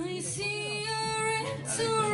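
Female vocalist singing long held notes that step and slide between pitches, over a soft, steady acoustic accompaniment.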